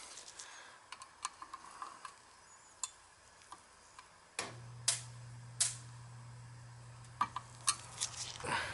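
Faint ticks and clicks of a screwdriver turning the temperature dial on a hot-water air handler's fan control. About halfway through, a click and then a steady low hum start: the fan coming on once the dial is set below the pipe temperature.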